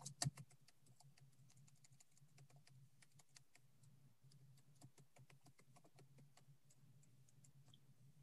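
Faint typing on a computer keyboard: a quick, uneven run of keystroke clicks, over a faint low steady hum.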